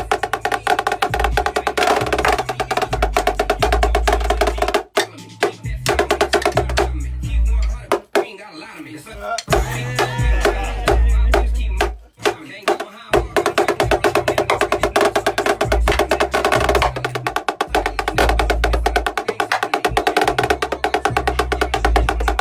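Rapid snare drum chops played with sticks on a tightly tuned marching snare, dense fast strokes over a hip hop track with heavy bass and vocals. Around the middle the drumming thins out for a few seconds, leaving mostly the track.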